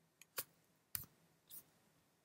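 Four short clicks of a computer mouse, about half a second apart, the first and last faint.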